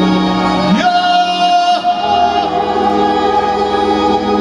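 Live band music with sustained organ-like chords; a voice slides up about a second in into a long held high note that breaks off a second later.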